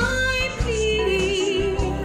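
A woman singing solo over instrumental accompaniment: a rising slide into a long, held note with vibrato.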